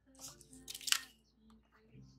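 Cardboard gift box being handled, with a few short soft scrapes and rustles of the lid and packaging in the first second, over a faint steady hum.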